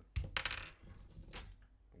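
A sharp knock, then a short clatter of hard objects with a smaller clatter about a second later: pistol magazines and gear being handled and set down.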